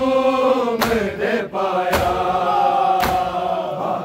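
A large group of men chanting a noha, a Shia mourning lament, together, with sharp hand slaps on bare chests (matam) in a steady beat about once a second.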